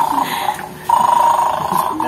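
A steady electronic buzzing tone, like an alarm clock, that cuts out briefly just before a second in and then resumes.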